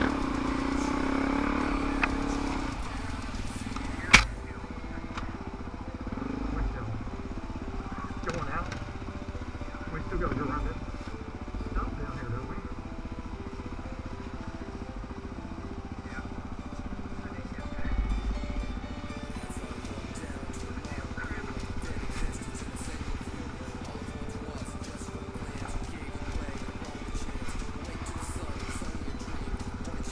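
Dirt bike's single-cylinder four-stroke engine running steadily at low revs, with one sharp knock about four seconds in.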